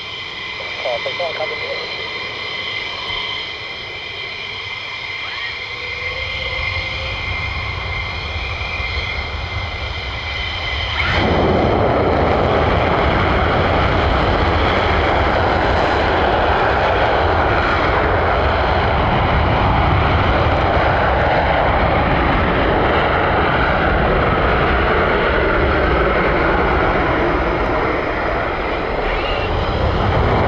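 F-15 fighter jet's engines whining with steady high tones and a building rumble, then about eleven seconds in the afterburners light with a sudden loud roar that holds steady through the takeoff roll.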